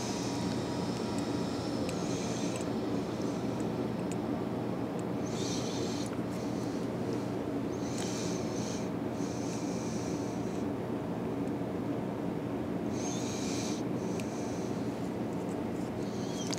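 Steady low hum of room noise, with a few short soft brushing sounds of tying thread being wrapped around a hook, one around five seconds in and others near the middle and toward the end.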